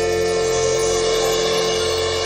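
A big band of saxophones, brass, guitars and piano holding one long, steady chord, the closing chord of a number.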